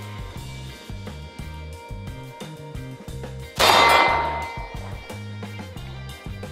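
A single 9mm shot from a SAR USA Kilinc 2000 Mega all-steel CZ-75-clone pistol, about three and a half seconds in, with a ringing tail that fades over about a second. Background music with a steady beat runs underneath.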